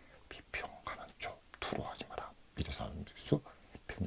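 Soft, half-whispered speech from a person muttering to himself.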